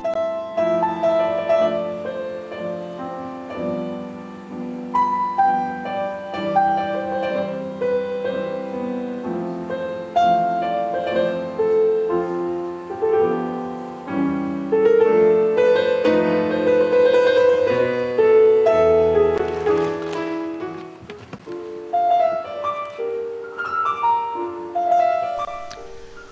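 Solo classical piano piece played on a Petrof grand piano: a flowing melody over sustained chords, mostly in the middle register.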